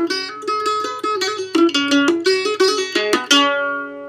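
Mandolin played with a pick: a short Amdo Tibetan folk melody in quick notes, with hammer-ons so that one pick stroke sounds two notes and the line runs smoothly. The last note, struck near the end, rings on and fades.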